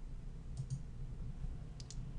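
Faint computer clicks over a low room hum: two light clicks about half a second in and two more near the end, as the slide is changed.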